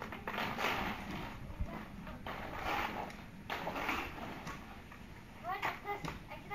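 Inline skate wheels rolling and rasping over rough concrete, in three glides of about a second each.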